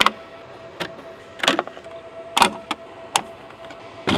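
Hands working the plastic and metal housing of a wall-mounted EP Cube battery-inverter unit: about half a dozen irregular sharp clicks and knocks, the loudest about a second and a half and two and a half seconds in, over a faint steady high hum.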